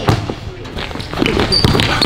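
Basketball bouncing repeatedly on a hardwood gym floor as it is dribbled.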